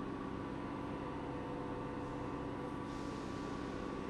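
Stationary passenger train at a station platform, its onboard equipment giving a steady hum with several fixed tones. A hiss joins about three seconds in.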